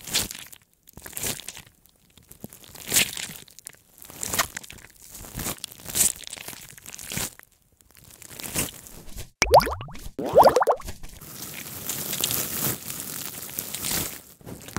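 Dubbed ASMR sound effects for blackhead extraction: a series of short, scratchy crackling bursts about once a second. About nine and a half seconds in come two quick rising glides, then a steady crackling hiss.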